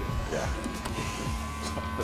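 Electric hair clippers running with a steady buzz while cutting hair.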